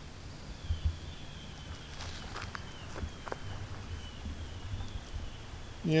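Soft footsteps and a few handling clicks over a low wind rumble, with a faint high whistled note falling in pitch several times.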